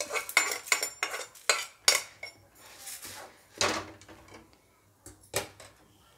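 A metal kadai clanking and scraping against the gas stove's metal pan support as it is set down: a quick run of sharp metal knocks in the first two seconds, then a few fainter knocks and scrapes.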